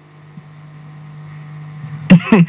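A low, steady hum that grows slowly louder.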